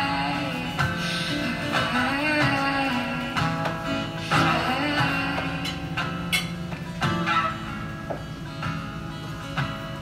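Acoustic guitar strummed in a slow, steady pattern, with a woman's voice singing phrases over it.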